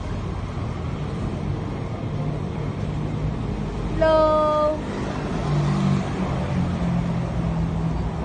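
Low, steady street traffic rumble with a motor vehicle's engine hum that comes and goes, strongest in the second half.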